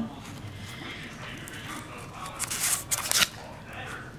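Crinkling and rustling of plastic and paper packaging as a small notebook is handled, with a louder burst of crackle a little past halfway.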